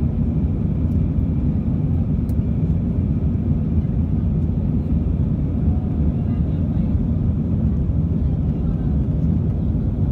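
Airbus A320 cabin noise in flight shortly after takeoff: a steady, loud, low roar of the engines and airflow, with a faint steady tone above it.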